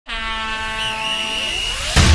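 Synthesized intro sound effect: a buzzy, horn-like sustained tone that starts suddenly, with notes sliding upward in its second half, a riser building into the theme music.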